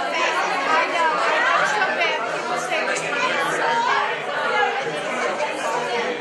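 A crowd of people talking at once: a steady hubbub of many overlapping voices.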